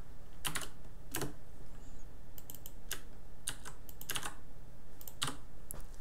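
Typing on a computer keyboard: irregular keystrokes, some in short quick runs with pauses between.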